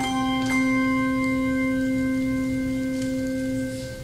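Handbell choir ringing a held chord: bells struck at the start and again about half a second in, several pitches ringing on steadily, then cut off just before the end.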